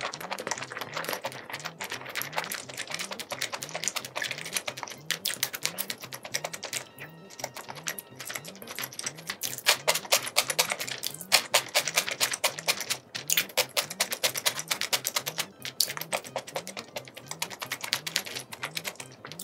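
Close-miked wet chewing of spicy stir-fried seafood and noodles: a dense, irregular run of small moist clicks and smacks, easing briefly twice.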